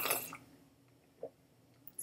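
A man slurps a sip from a mug, a short wet sucking sound in the first half second, followed by a faint single click about a second later.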